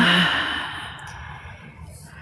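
A person's long breathy exhale, like a sigh, loud at first and fading away over about two seconds.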